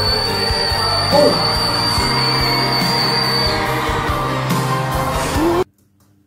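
A male singer holding a freakishly high whistle-register note, the D8, over backing music. The note ends about three and a half seconds in, and the music cuts off suddenly near the end.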